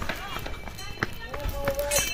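Footsteps on a paved walkway, a string of short irregular steps, with people talking nearby.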